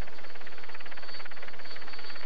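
Helicopter rotor chopping rapidly and steadily, with a thin high whine running over it.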